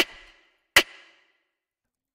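A rim-shot snare sample made from a recording of a human voice and processed with effects, played twice about a second apart. Each sharp crack has a short tail that fades out within half a second.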